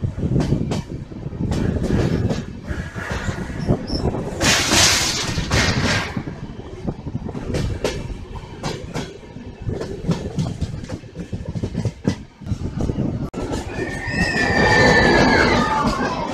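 Passenger train running on the ghat line: a steady rumble with wheels clicking over rail joints, and a brief rushing hiss about five seconds in. Near the end the wheels squeal in gliding high tones.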